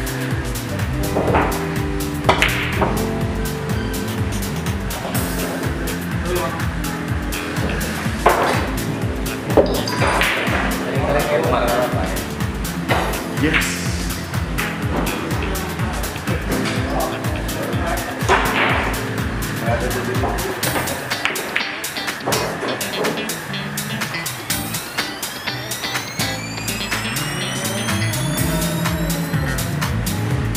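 Background music with a steady beat and voices mixed in; near the end, several rising tones sweep upward.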